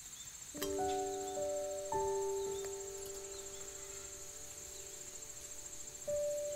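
Soft background music: a few keyboard notes struck in the first two seconds and left to ring and fade. Under it runs a steady high-pitched trill of insects, like crickets.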